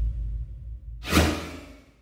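A sound-effect whoosh about a second in, fading out quickly, over the tail of a fading low rumble.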